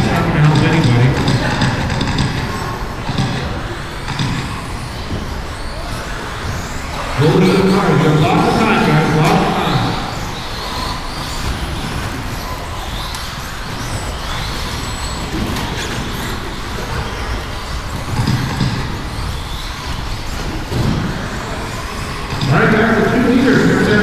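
Electric 1/10-scale 2WD RC buggies racing on an indoor carpet track: a steady bed of motor whine and tyre noise in a large hall. A man's voice breaks in at the start, about seven seconds in, and again near the end.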